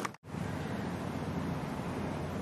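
Steady outdoor background noise with no distinct event, after a brief dropout to silence just after the start where the broadcast picture cuts.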